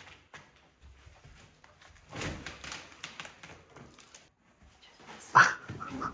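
Board and plaster being prised and pulled off an old wall by hand: quiet scraping and crumbling, with a louder scrape about two seconds in and a short, sharp, loud noise near the end.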